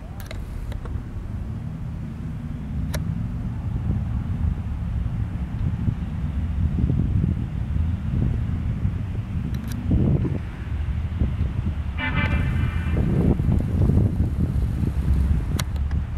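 Low rumble of a patrol boat's outboard engines heard across the water, mixed with wind on the microphone. A short horn toot sounds about twelve seconds in.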